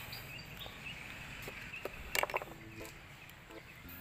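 Quiet outdoor background noise, with a brief cluster of sharp clicks a little past halfway.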